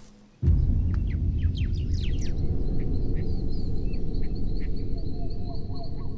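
Outdoor dusk ambience: birds calling with many short falling chirps, a steady thin high insect-like tone, and repeated mid-pitched calls near the end. All of it sits over a loud low rumble that starts suddenly about half a second in.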